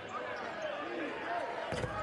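Basketball game sounds on a hardwood court: the ball being dribbled and faint voices of players and crowd, with a heavier thud near the end.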